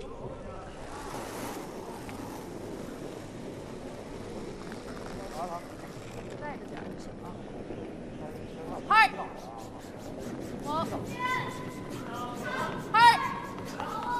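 Curling players shouting short calls on the ice during a delivery, a loud one about nine seconds in and a quick run of them near the end, over a steady hiss of arena ambience.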